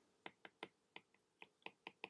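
A quick, uneven run of faint clicks, about five a second: a stylus tapping and writing on a tablet screen.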